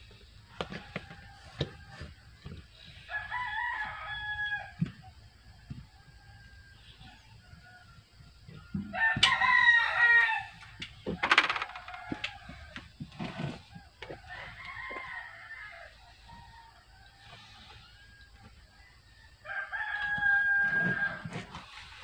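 Rooster crowing four times, the loudest crow about nine seconds in, with scattered sharp clicks between the crows.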